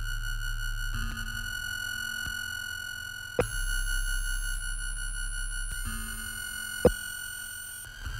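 Minimal live electronic music: several steady pure electronic tones held over a low drone. The high tones switch abruptly at sharp clicks about three and a half seconds in and again about seven seconds in.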